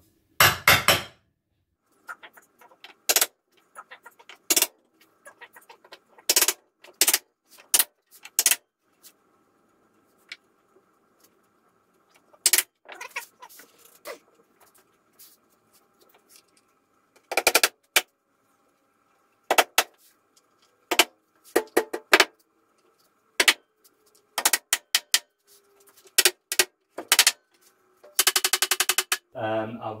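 Small hammer tapping a metal punch in the shelf-support holes of a wooden bookcase side panel: sharp metallic taps, single or doubled, at irregular intervals of about a second, with a quick run of rapid taps near the end.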